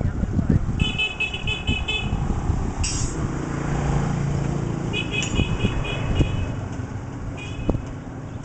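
Motor vehicle passing on a nearby road; its low engine hum swells around the middle and then fades. Three short bursts of rapid high chirping come over it, about a second in, around five seconds in and near the end, along with scattered low knocks.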